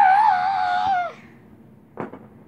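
A child's high-pitched, drawn-out cry, held for about a second and dropping in pitch at the end, play-acting a toy figure in distress. A short click near the end.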